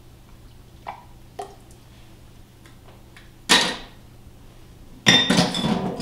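Stainless steel stockpot and glass jars being handled on a counter: two light clicks, a sharp clatter about three and a half seconds in, then a louder ringing metal clank near the end.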